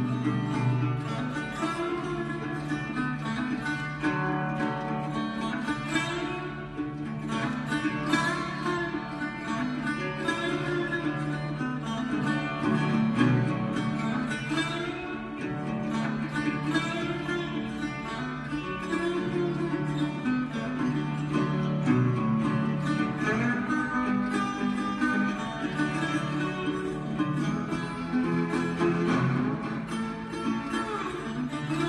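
Early-1930s National metal-body resonator guitar playing an upbeat 1920s ragtime instrumental, with a steady bass line under quick plucked melody notes and a few notes sliding in pitch.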